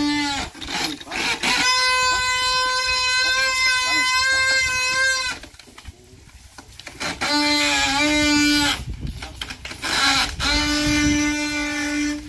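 Wooden axle of a Brazilian carro de boi (ox cart) singing as the cart rolls: a long steady high whine beginning about a second and a half in, then two shorter, lower whines near the middle and end.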